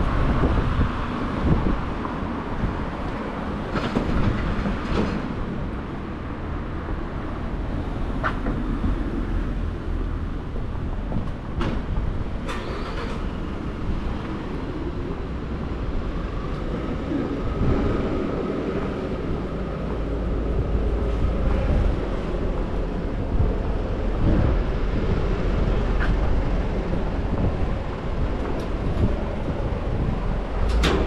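Busy city street ambience: a steady rumble of road traffic that deepens in the second half, with a few sharp clicks and taps along the way.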